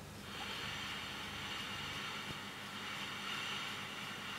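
A man sniffing a glass of cider: one long, steady inhalation through the nose lasting about four seconds as he takes in its aroma.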